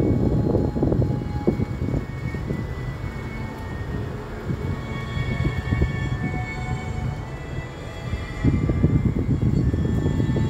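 Uneven low rumble of wind buffeting the microphone, heaviest at the start and again near the end, with faint thin high tones in the quieter middle stretch.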